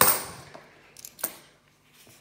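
A 50p coin clinks down with a short metallic ring that fades within about half a second, followed by two faint clicks of coins being handled.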